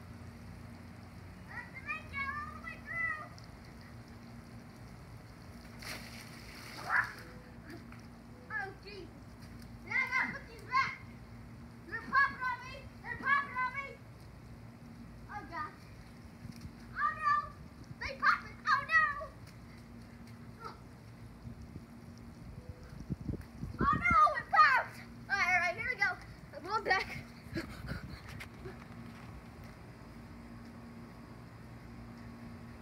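A child's short shouts and squeals during backyard play, coming in quick bursts every second or two, loudest in a cluster about 24 seconds in.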